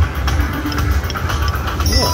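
Cashnado Super Strike video slot machine spinning its reels: electronic game music with short blips and ticks over a constant low casino rumble. Steady chiming win tones start near the end as the spin lands a small win.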